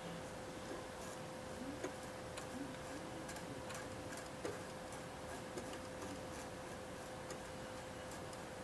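Faint, irregular clicks and light scrubbing of a cotton bud rubbed over a plastic scale model's panel lines, wiping off a clay-based wash. A steady faint hum sits underneath.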